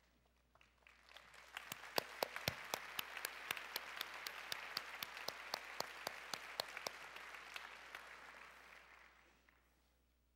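Audience applauding: the clapping builds about a second in, holds, and dies away near the end, with one nearby clapper's claps standing out at about three a second.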